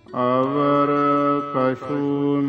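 Gurbani kirtan: a male voice singing a line of the shabad, a long held note that begins just after the start and breaks off briefly about one and a half seconds in before carrying on.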